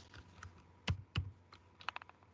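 A few quiet computer keyboard keystrokes: two separate taps around the middle, then a quick little cluster near the end.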